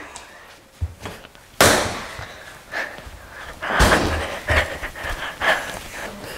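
Bread dough being slapped and thumped down on a granite countertop during kneading, a handful of irregular thuds, the loudest about one and a half seconds in.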